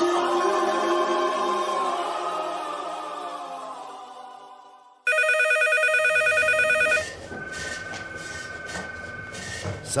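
Music fades out over about five seconds; then an electronic telephone ring, a fast trilling tone, starts abruptly, loud for about two seconds, and carries on more softly.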